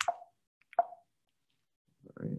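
Two short, soft clicks just under a second apart, then silence.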